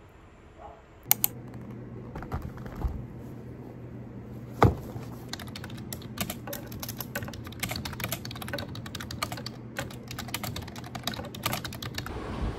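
Typing on a computer keyboard: quick, irregular key clicks starting about a second in, with one louder knock about four and a half seconds in. A steady low hum runs underneath.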